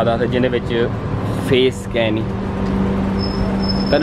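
Street traffic: a steady low engine hum from road vehicles, with a man talking in short snatches over it.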